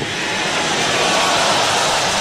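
Large congregation applauding: a dense, steady rush of clapping that fills the pause between the preacher's phrases of thanks.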